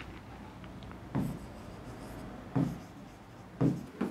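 Pen writing on an interactive display board, with a few dull knocks of the pen against the screen, three in all.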